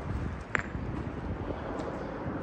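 Footsteps on a rocky, gravelly path, with wind rumbling on the microphone and one sharp click about half a second in.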